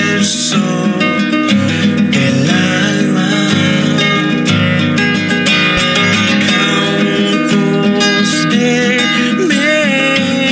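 A man singing to his own nylon-string classical guitar, the guitar played steadily throughout, with the voice rising into a long, wavering held note near the end.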